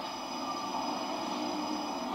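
A mobile phone's electronic ringtone: several steady high-pitched tones held together, over a faint background hiss.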